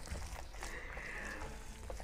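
Bare hands kneading and squeezing soft black soap paste in a plastic bowl: faint wet squishing over a low steady hum, with a faint high-pitched sound lasting under a second in the middle.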